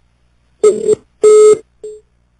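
Three loud electronic beeps at one steady mid pitch: a first beep about half a second in, a longer second one, and a short third near the end.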